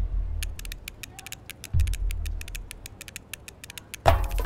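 Dramatic film score: two deep bass booms, one at the start and one nearly two seconds later, under a fast, irregular ticking percussion that builds toward the music proper.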